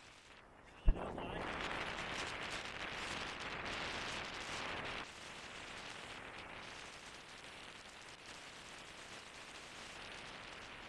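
A sharp knock about a second in, then strong wind buffeting the microphone in a loud rush that drops suddenly after a few seconds to a steadier, quieter blowing.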